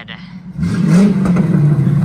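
A car arriving with its engine running close by; the engine gets louder about half a second in, with a brief rise in pitch.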